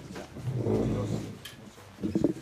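A low, indistinct man's voice murmuring off-microphone for under a second, starting about half a second in, followed by a short click.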